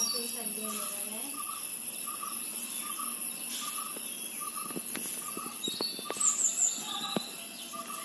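Outdoor birdsong and insects: a short call repeating about twice a second, scattered higher chirps with a louder run just past the middle, and a steady high insect whine underneath.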